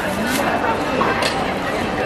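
People talking in a busy market, with a couple of short light clicks.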